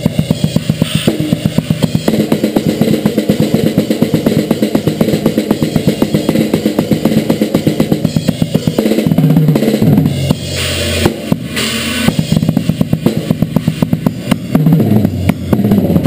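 Acoustic drum kit played fast in extreme-metal style: a dense, rapid run of kick drum and snare strokes in a blast beat. Falling tom fills come about halfway through and again near the end, and a cymbal crash rings after the first fill.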